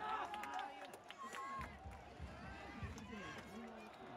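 Football supporters in the stands cheering and chanting, many voices overlapping, shouted hoarse.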